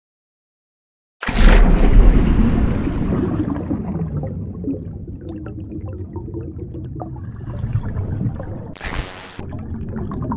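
Designed sound effect of a glass bottle plunging into water. A heavy splash with a deep boom comes about a second in, followed by a long, churning, bubbling underwater rumble that slowly fades. A short whoosh comes near the end.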